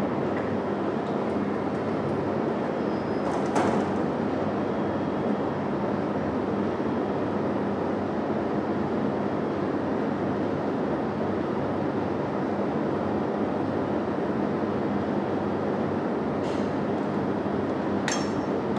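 Laminar-flow cabinet blower running steadily, a constant fan rush with a low motor hum. A short clink of glassware about three and a half seconds in and again near the end.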